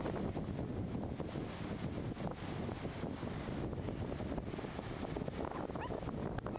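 Steady wind rushing and buffeting across the microphone on an open beach, with the wash of breaking surf underneath.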